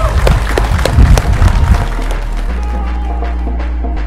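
Scattered hand claps from a small group of people over background music for about the first two seconds, then the music alone with a steady bass line.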